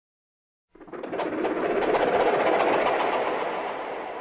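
Silence for under a second, then a rushing noise with a few faint clicks in it swells up and slowly fades away.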